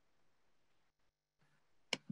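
Near silence, then a single sharp computer mouse click near the end, advancing the presentation slide.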